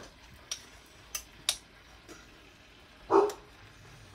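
A few light clinks of metal tongs against a small plate and a saucepan as pats of butter go into the sauce, then one short, louder voice-like sound about three seconds in.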